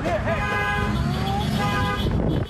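A car horn held steadily for about a second and a half, over a heavy outdoor rumble of wind and traffic, with a brief voice just before it.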